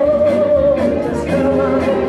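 Soul record playing over a dance hall's sound system: a singer holds a long note at the start over a bass line and a beat.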